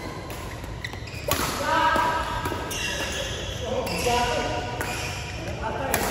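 Badminton rally in a large hall: sharp racket-on-shuttlecock hits, the loudest one near the end, with the hall's echo behind them.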